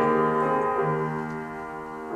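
Piano playing a slow classical passage: a chord struck at the start and left to fade, with a new low note coming in a little under a second in.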